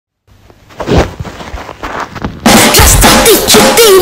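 A few soft knocks and clicks, then about two and a half seconds in, a loud children's cartoon song sung in Russian starts abruptly.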